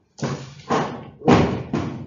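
Four thumps and knocks about half a second apart, the third the loudest, from something being handled.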